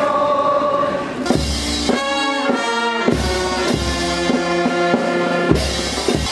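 Brass band playing slow, held chords, with deep drum beats every couple of seconds. It comes in about a second in, after a moment of voices singing.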